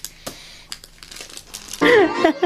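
Soft rustling and scattered light clicks of cloth and handling noise, then string music starts loudly near the end.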